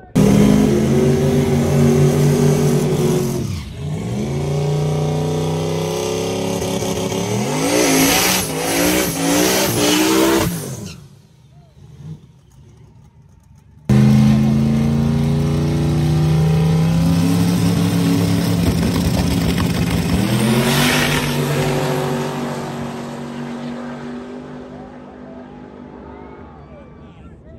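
Drag race cars' engines at full throttle, pitch climbing, dropping at a gear change and climbing again. This happens in two passes: the first cuts off suddenly about eleven seconds in, and the second starts abruptly a few seconds later and fades away toward the end.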